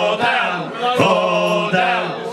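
Male voices singing a sea shanty unaccompanied, holding long sung notes with no instruments.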